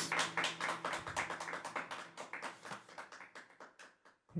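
Applause after a song, clapping hands fading away toward the end.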